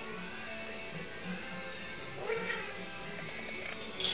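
A Birman kitten mews once, briefly, a little after two seconds in, over quiet background music.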